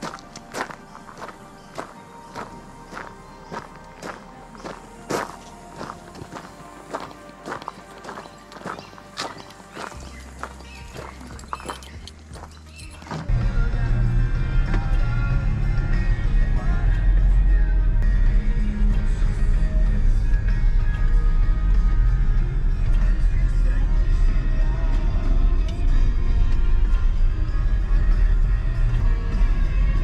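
Footsteps crunching on a gravel and dirt track, a little under two steps a second. About thirteen seconds in they give way to the loud low rumble of an SUV driving on an unsealed road, heard from inside the cabin.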